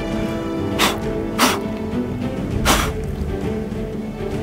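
A man blowing sharply three times to clear loose sand from a footprint in rock, each blow a short breathy puff, over background music with sustained notes.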